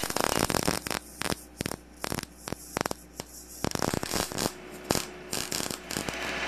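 MIG welder tack-welding steel railing joints. About a second of continuous arc crackle is followed by a series of short crackling bursts, each a quick tack, over a steady electrical hum.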